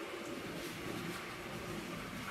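Quiet, steady noise with a soft rustle of wet, soot-soaked paper towels being crumpled in rubber-gloved hands.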